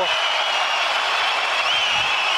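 Arena crowd cheering loudly during ground strikes on a downed fighter, a dense wash of many voices with a few high whistles over it.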